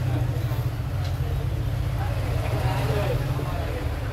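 A steady low rumble of background noise with faint voices in the background.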